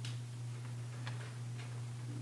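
A steady low hum with a few faint ticks about twice a second.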